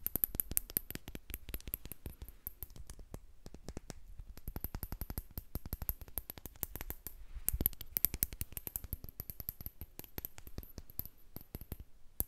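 Fingernails tapping fast on a small metal cylinder close to the microphone: quick, uneven flurries of sharp little clicks.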